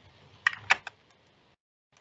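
Three quick, sharp clicks of computer input about half a second in, followed by silence.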